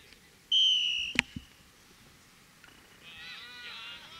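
A short referee's whistle blast about half a second in, the loudest sound, followed at once by a sharp knock. Near the end, high-pitched shouts from players on the field.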